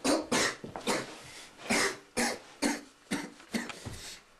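A teenage boy acting out a stabbing victim's death throes: about nine short, harsh coughs and choking gasps in an uneven series.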